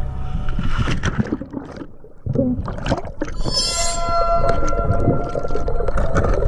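A diver in fins splashing into the sea off a boat, followed by muffled underwater rushing and bubbling as he swims below the surface.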